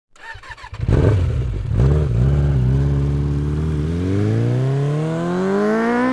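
A motorcycle engine comes in loudly about a second in and runs with a brief dip in revs. It then revs up, its pitch climbing steadily over the last two seconds.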